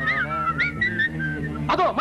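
Film-song backing music: a whistled tune of short, gliding notes over a steady bass line. Voices break in near the end.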